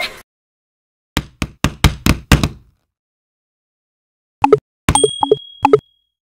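Sound effects of an animated subscribe graphic. A quick run of about six sharp knocks, four a second, is followed after a pause by a few more pitched knocks and a thin, high held ding.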